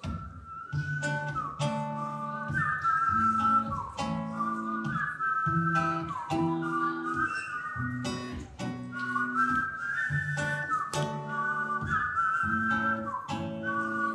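Acoustic guitar strummed in a steady rhythm while a whistled melody, sliding between notes, carries the tune over it through a stage microphone.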